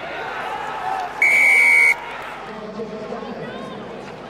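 Referee's whistle, one steady blast of under a second, blown as a try is grounded at the post, over a noisy stadium crowd.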